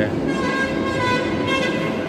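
A steady, high-pitched tone with several overtones, held for about a second and a half over a continuous background noise.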